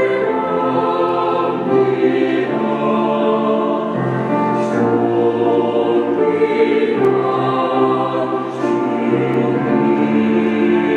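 Mixed choir of men's and women's voices singing a slow, sustained choral anthem, the chords shifting every couple of seconds.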